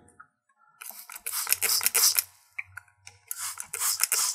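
Small plastic squeeze bottle squirting liquid into a plastic bottle cap to rinse out masking fluid: two hissing, spattering squirts, each over a second long.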